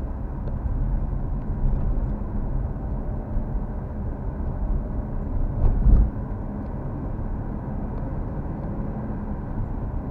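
Car driving along a city street, heard from inside the cabin: a steady low rumble of engine and tyres on the road, with one louder low thump about six seconds in.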